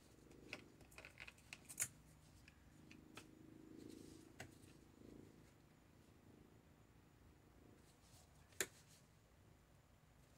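Near silence, with a few faint clicks and taps in the first couple of seconds and one sharper click near the end.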